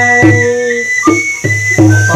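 Live ritual folk music: a hand drum beating a steady low pulse under a high, sustained melody line held in long notes.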